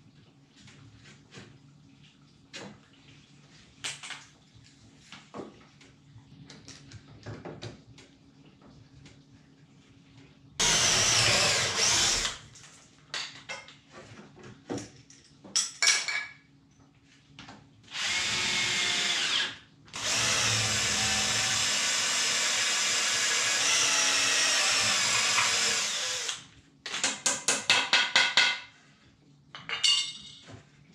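Cordless drill driven into wooden slats in several bursts: a short one, another short one, then a long steady run of about six seconds. Near the end comes a quick rapid-fire stutter of pulses. Light knocks of wood being handled come before the drilling.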